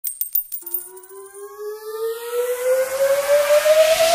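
A quick run of sharp electronic clicks with a high tone, then a synthesized tone slowly gliding upward under a swelling noise sweep: an electronic build-up riser that grows steadily louder.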